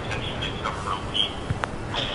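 A reporter's voice coming faintly over a speakerphone into the room, thin and tinny, asking a question. A sharp click about one and a half seconds in.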